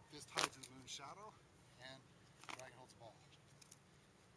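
A faint voice speaking in short snatches, with a few sharp clicks, the loudest about half a second in.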